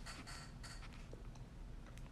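Faint scratchy rubbing and scraping close to the microphone, a few short scrapes in the first second, over a low steady room hum.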